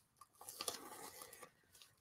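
Green masking tape being peeled off soaking-wet painted fabric: a faint rustling, crackling strip-off lasting about a second.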